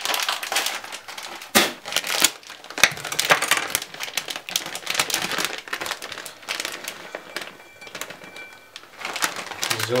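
Plastic bag of grated cheese crinkling and rustling as it is torn open and then shaken out over a burger, with irregular crackly bursts throughout.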